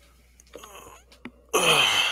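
Faint room tone with a few soft clicks, then, about three-quarters of the way in, a man's loud, drawn-out vocal sound falling in pitch that runs straight into speech.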